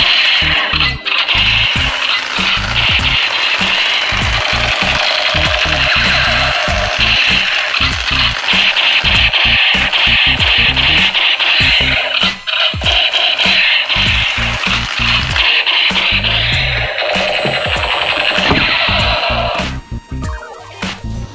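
Battery-powered light-up toy sniper rifle playing its electronic sound effect through its small speaker: a loud, continuous harsh noise that cuts off suddenly near the end. Background music with a beat runs underneath.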